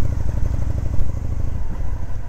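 Motorcycle engine running as the bike rides off at low speed, a steady deep engine note heard from the rider's position behind the windscreen.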